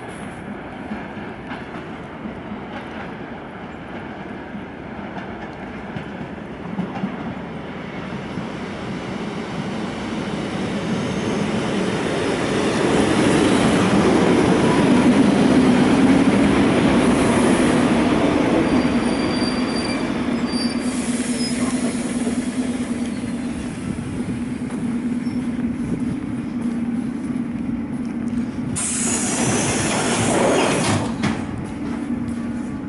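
ER2K electric multiple unit pulling into a station platform: the rumble of its wheels and cars grows louder as it comes alongside, with brief high wheel squeals as it slows. A steady low hum follows as it comes to a stand, and a burst of noise comes just before the end.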